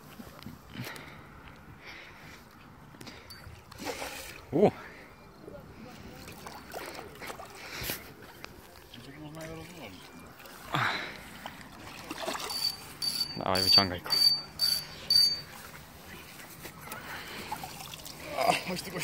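A hooked fish splashing at the surface as it is drawn over a landing net and lifted out of the water, with scattered splashes and drips. About two-thirds of the way in there is a quick run of short, high-pitched beeps among sharp clicks.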